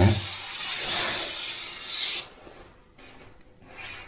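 Dual-action airbrush spraying a line of paint: a steady hiss of air that swells and eases as the trigger is worked, then cuts off about two seconds in when the air is released.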